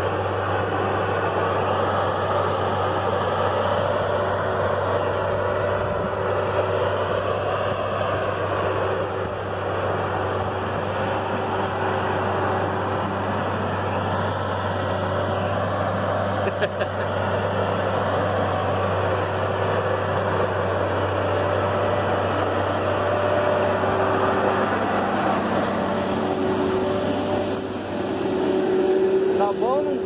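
Massey Ferguson MF 9330 self-propelled crop sprayer's diesel engine running steadily as the machine crawls over a dirt bank and loose stones.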